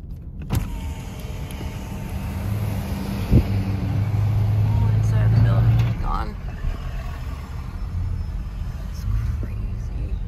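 Car driving, with road and engine noise heard from inside the cabin. A low, steady drone swells to its loudest in the middle and then drops away, with a sharp click just after the start and a single knock a few seconds in.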